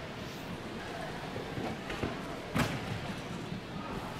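Gymnasium room noise with faint distant voices and one sharp thud about two and a half seconds in.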